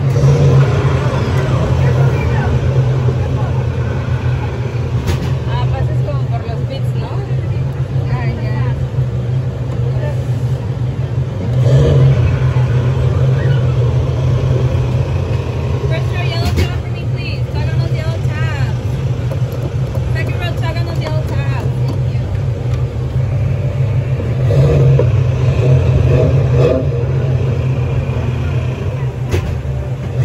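Radiator Springs Racers open-topped ride car running along its track with a steady low rumble and wind noise, swelling louder twice as it picks up speed.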